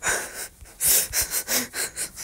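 Breathy, nearly voiceless laughter: a run of short puffs of breath, about five of them.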